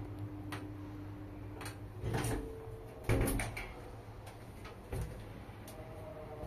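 Old Schindler elevator's doors being shut and latched: a short rumble about two seconds in, then a loud clunk about three seconds in, with lighter clicks before and a knock near five seconds.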